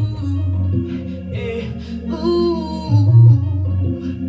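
A woman singing a slow southern soul song into a handheld microphone, over a DJ's backing track with a deep bass line and sustained keys.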